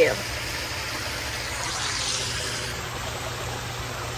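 Steady rushing background noise with a low hum underneath, unchanging throughout.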